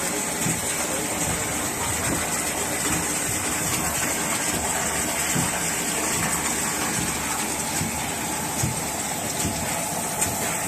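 Steady rush of water from a wastewater filter-press treatment machine, with filtrate pouring from its row of outlet taps into the collection trough and the machine's pump running underneath.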